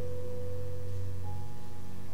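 Soft background instrumental music: sustained held notes over a steady low tone, with a new higher note entering a little past the middle.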